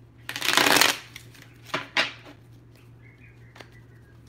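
A deck of tarot cards shuffled by hand: a loud burst of shuffling lasting under a second, then two short sharp snaps of the cards about two seconds in.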